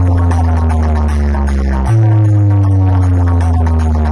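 Very loud electronic dance music played through a large stacked DJ speaker system, dominated by deep held bass notes that each slide slowly down in pitch, a new one striking about two seconds in, with a faint beat above.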